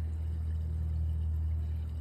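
RV black tank water draining through a corrugated sewer hose into a ground sewer inlet, a steady low rumble with no change over the two seconds.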